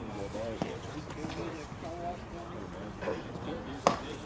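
Indistinct chatter of voices around a baseball field, with one sharp pop near the end as a pitched baseball smacks into the catcher's leather mitt.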